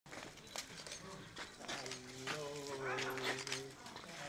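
A person's voice holding one long, steady-pitched sound for about a second and a half in the second half, over quiet background with a few soft clicks, during a greeting and hug.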